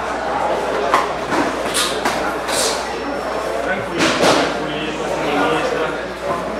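Voices calling out around a boxing ring in a large, echoing hall, broken by a few short sharp thuds of gloved punches, the loudest about 4 seconds in.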